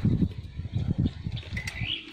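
A few dull low thumps in the first second, then a bird gives a short rising chirp near the end.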